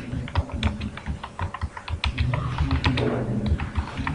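Computer keyboard being typed on: a quick, uneven run of key clicks, several a second.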